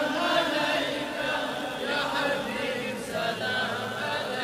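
Chanting voices in a sustained vocal chorus, quieter than the sung lines around it: the vocal backing of a devotional naat.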